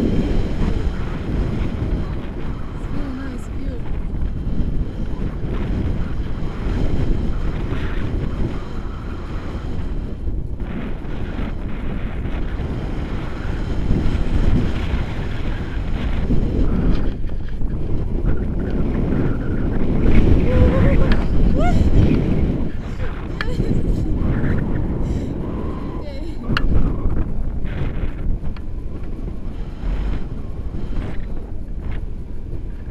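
Wind rushing and buffeting over a selfie-stick camera's microphone during a tandem paraglider flight, a steady rumble that swells in gusts and is loudest a little past the middle.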